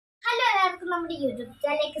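A girl speaking to the camera, starting just after a moment of dead silence at the very beginning.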